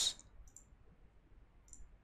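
Faint computer mouse clicks: a single click about half a second in and a quick pair near the end, as pattern lines are selected one by one.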